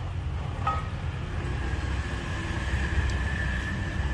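Steady low background rumble, with a faint, steady high-pitched whine that joins about a second in and holds.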